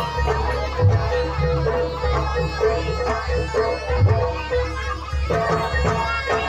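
Live jaranan music: a reed trumpet (slompret) plays a melody of held notes over repeated low drum and gong strokes.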